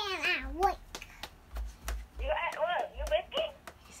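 A little girl's high-pitched voice, a squeal at the start and short babbling utterances after a pause, with a few light clicks in between.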